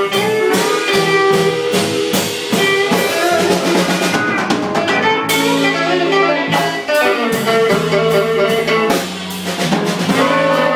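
Live blues band playing: electric guitars over a steady drum-kit beat, with no singing.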